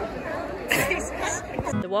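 A crowded colony of California sea lions barking, mixed with people chattering, with a louder burst less than a second in. Near the end it cuts abruptly to guitar music and a woman's voice.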